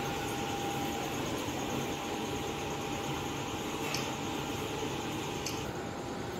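Steady whirring room noise, like a running fan, with a faint steady tone through most of it and two soft clicks near the end.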